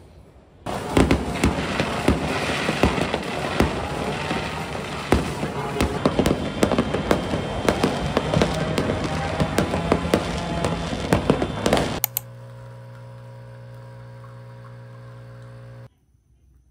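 Fireworks going off, a dense run of crackles and sharp bangs for about eleven seconds, then cutting off suddenly. After that comes the steady, even buzzing hum of a Nescafé Dolce Gusto Genio S capsule coffee machine's pump, which stops near the end.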